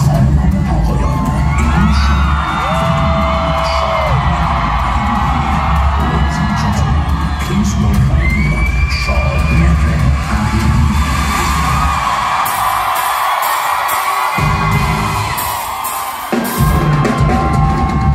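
A concert crowd cheering, shouting and whistling over a deep, pulsing bass intro from the hall's PA. The bass drops away for a couple of seconds near the end, then returns.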